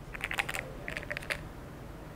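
Small plastic clicks as the cap of a white tube is opened and handled, in two quick runs of several clicks each within the first second and a half.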